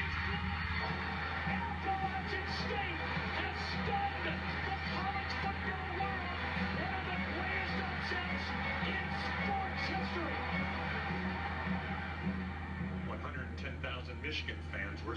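Television audio heard through the TV's speaker and picked up in the room: background music with indistinct voices over a steady low hum.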